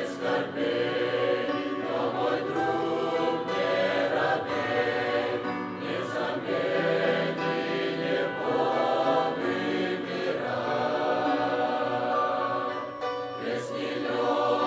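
Mixed youth choir of men's and women's voices singing a hymn in parts, phrase after phrase with brief dips between them.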